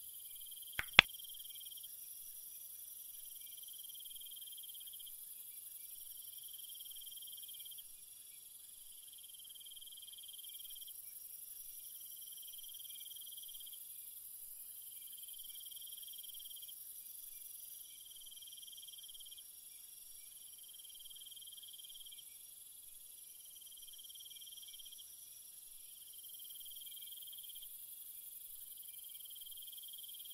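Crickets chirping in faint, overlapping trills over a steady high hiss, with two sharp clicks about a second in.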